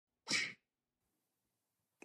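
A person's single short, sharp breathy burst, about a third of a second long, a quarter of a second in.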